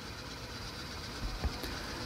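Faint steady room tone with a low hum, in a pause between words.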